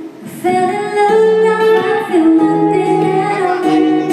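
A woman singing live into a microphone, holding long notes, over acoustic guitar accompaniment; the singing comes in about half a second in, after a brief dip.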